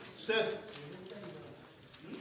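A man's voice counting ballots aloud, one number spoken just after the start, then a quieter drawn-out voice tailing off.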